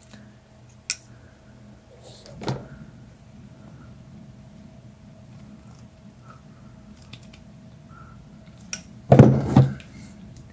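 Handling sounds of needle-nose pliers crimping a small gold bullet connector onto a heater wire: a sharp click about a second in and a soft knock a couple of seconds later over a faint steady hum, then a louder knock and rustle near the end as the pliers and wires are moved on the tile floor.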